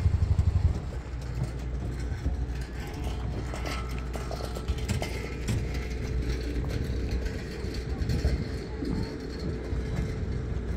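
A motor vehicle's engine running close by, loud and pulsing for the first second, then dropping away. After that a steady low engine rumble continues under faint clinks and distant voices.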